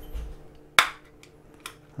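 A single sharp plastic snap about a second in as the torch's clipped-on front piece releases from the body, with a soft bump just before it and a few faint handling clicks after.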